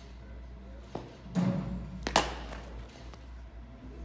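A dull thud about a second and a half in, then, under a second later, a sharp crack: a cricket ball pitching on the artificial-turf matting and being struck by a narrow one-inch-wide wooden training bat.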